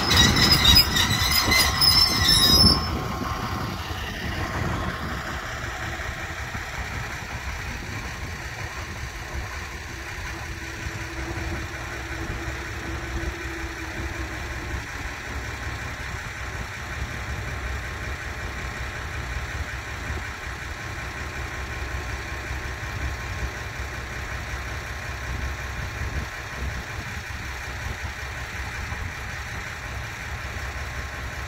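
Diesel shunting locomotive running light past on the rails, its wheels squealing in several high-pitched tones. The squeal cuts off suddenly about three seconds in, leaving a steady low rumble.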